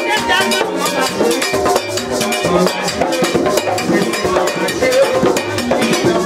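Vodou ceremonial song: a woman sings through a microphone over a fast, steady beat of drums and percussion, with a bell-like clang among the strokes.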